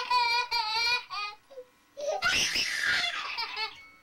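A small child in a crib squealing and laughing: one long high-pitched squeal that falls slightly in pitch, a few short vocal bits, then a breathy burst of laughter about two seconds in.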